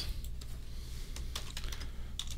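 Typing on a computer keyboard: a scattering of irregular, light key clicks as a short word is entered.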